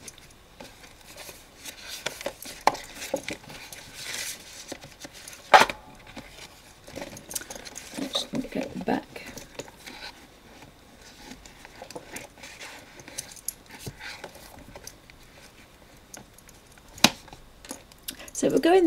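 Handling noise of a leather-covered Bible and plastic file folders being shuffled and slid about, with soft rustling and a few sharp clicks, the loudest near the end.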